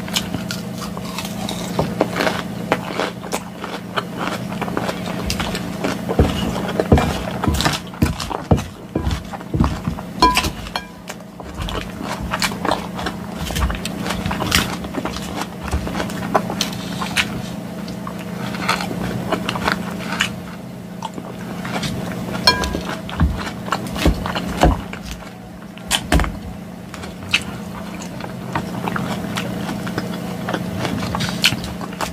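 Close-miked eating of a green salad: crisp lettuce crunched and chewed, with frequent small clicks and scrapes of a fork against a glass bowl, over a steady low hum.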